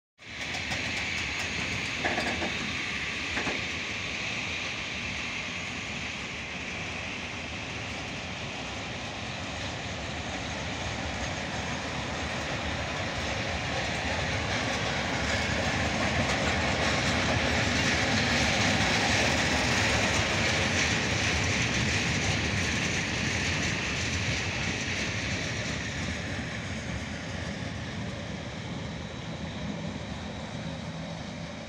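Freight train of open wagons rolling past, its wheels running over the rails in a steady rumble that swells to its loudest about two-thirds of the way through and then eases off.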